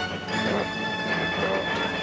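Steel Ferris wheel machinery running with a grinding, squealing metal sound, under dramatic music.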